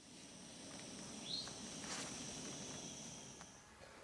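Faint outdoor ambience: a steady high-pitched insect drone, with a single short bird chirp about a second in.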